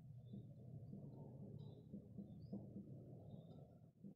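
Near silence: faint room hum with a few soft squeaks of a marker writing on a whiteboard.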